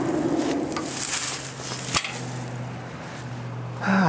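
Rustling and handling noise, with one sharp click about halfway through and a faint steady low hum that starts about a second in.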